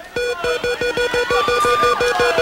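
A large game-show prize wheel spinning fast, its pegs clicking past the pointer in an even run of ringing ticks, about eight or nine a second.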